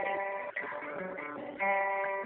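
Guitar strummed, its chords ringing out, with a fresh strum about one and a half seconds in.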